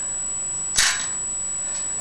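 A single short metallic clink about three-quarters of a second in, from a bicycle cassette's cogs being handled as the cassette is pulled off the rear hub.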